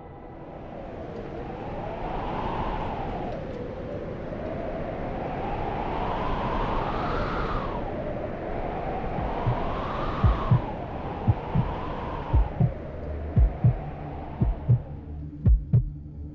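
Suspense sound design from a TV drama score: a wavering drone that swells and falls in pitch every few seconds. From about halfway, low heartbeat-like thumps join it and come more often toward the end.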